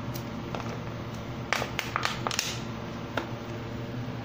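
A few light clicks and taps from a spice container being handled, in a cluster about a second and a half in and once more near the end, as ground black pepper is readied for the pot. A steady low hum runs underneath.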